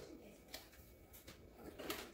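Faint kitchen room tone with a few soft clicks and knocks, the most distinct near the end as a lower kitchen cabinet door is opened.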